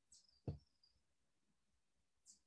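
Near silence, broken by a single faint knock about half a second in, with brief high hissing just before and near the end.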